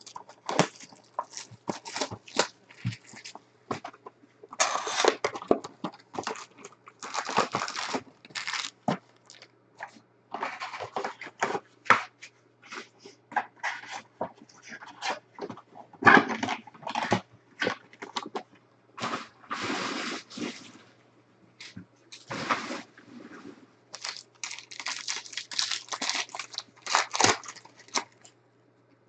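Plastic wrap and foil trading-card pack wrappers crinkling and tearing in irregular bursts as a hobby box of Panini Prizm football cards is opened and its packs handled.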